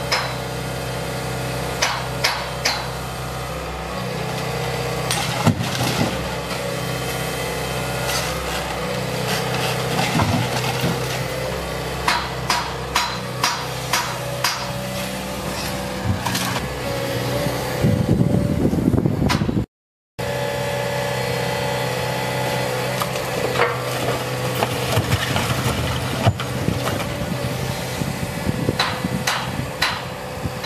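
JCB tracked excavator engine running steadily while its demolition grab breaks and shifts brick and concrete rubble, giving repeated sharp knocks and cracks. A longer, denser clatter of falling rubble comes about two-thirds of the way through, followed by a brief cut in the sound.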